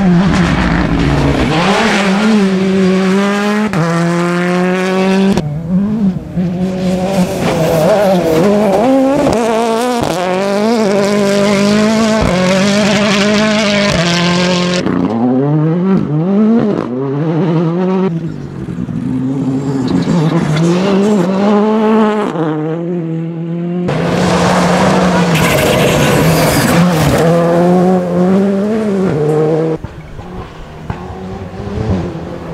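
Several rally cars in turn driving flat out on loose gravel, each engine revving up and dropping back at gear changes, over a hiss of tyres and thrown gravel. The sound is loud and switches abruptly from one car to the next a few times.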